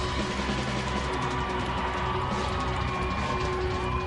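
Indie garage rock band playing electric guitars and bass, with a long held note over steady low notes.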